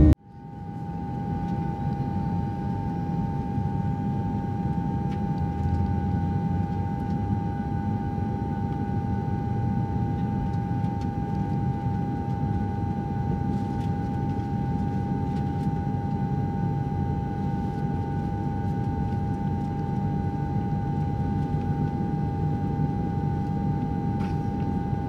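Jet airliner cabin noise in flight: a steady rumble of engines and airflow with a steady mid-pitched tone on top. It fades in over the first second.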